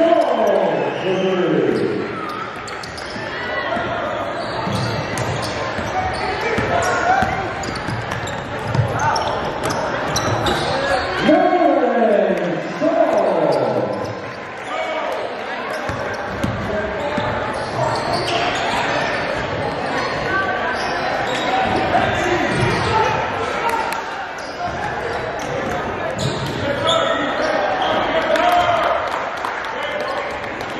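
Live basketball game sound in a gymnasium: a ball dribbling, players' and spectators' voices echoing in the hall. A falling tone sweeps down twice, at the start and about eleven seconds in.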